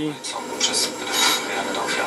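Hiss from the Unitra AT9115 receiver's loudspeaker while the FM tuner's input circuit is being aligned near mid-scale. The tuner is still drawing mostly noise, with at most a weak station under it: it is not yet aligned.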